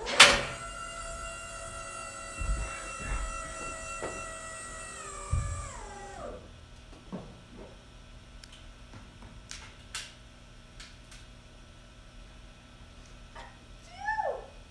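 An electric personnel lift raising a technician: a sharp knock as it starts, then a steady high motor whine for about five seconds that winds down in pitch as the platform stops.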